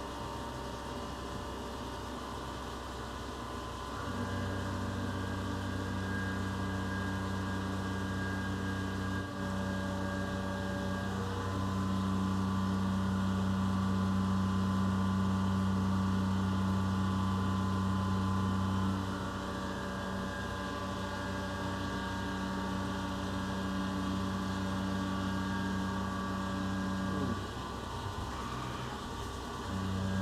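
Tormach 770MX CNC mill running its first pass of a roughing program at a deliberately conservative feed: spindle and axis drives hum steadily while a flood-cooled end mill cuts an aluminum block held out in a MicroARC 4 rotary fourth axis. The hum gets louder about four seconds in and shifts in level a few more times as the cut goes on.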